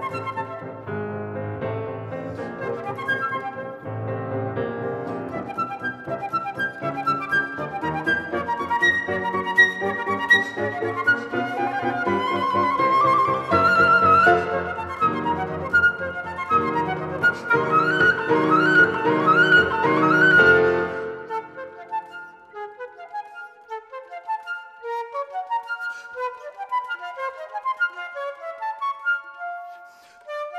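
Flute and Bösendorfer grand piano playing a lively waltz together, with a string of quick rising flute runs a little past the middle. About two-thirds of the way in, the piano drops out and the flute carries on alone.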